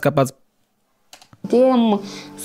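Speech cut off by a sudden gap of dead silence lasting under a second, then a few faint clicks before the voice resumes.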